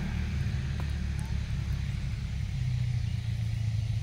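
Car passing on the road, a low steady engine and tyre rumble that grows a little stronger in the second half.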